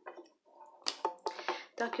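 A woman's soft speech, with a few short sharp clicks among the words.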